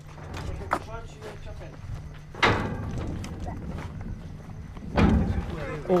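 Low background rumble with faint voices, broken by knocks or thuds. The loudest come about two and a half seconds in and again about five seconds in.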